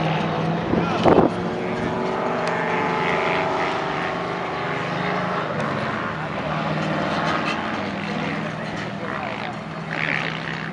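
Drift car's engine running hard at a distance, its pitch rising and falling as the driver works the throttle through the slide, with a brief loud burst about a second in.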